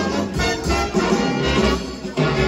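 Music played by a DJ on turntables through a bar's loudspeakers, with a steady bass beat about twice a second.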